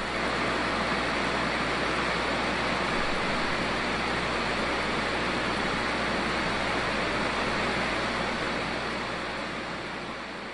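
Steady, even hiss with a low hum beneath it, fading out over the last couple of seconds.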